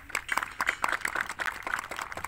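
Audience applauding: many overlapping hand claps at an irregular, rapid rate.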